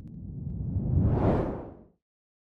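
Whoosh sound effect of an animated logo sting, deep and rising to a peak a little past a second in, then fading away just before the end.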